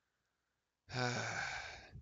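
About a second of silence, then a man's long, breathy, sighing "uh" that falls in pitch, an exasperated filler.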